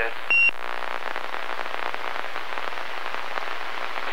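CB radio receiver: a short, high steady beep as a transmission ends, then steady hiss of band static with faint crackles.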